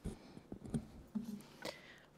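Handling noise from a podium gooseneck microphone being gripped and adjusted: a bump as it is taken hold of, then a few soft knocks and rubs.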